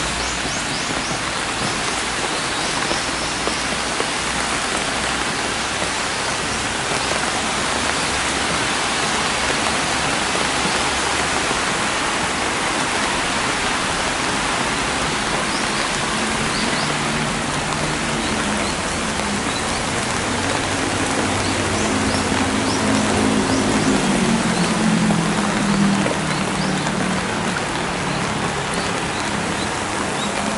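Steady rain falling, an even hiss with no pauses. About halfway through a low hum joins in and grows louder toward the end.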